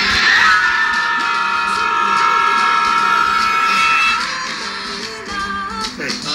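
Background music with a long sustained high note that holds for about four seconds, then gives way to quieter, busier music.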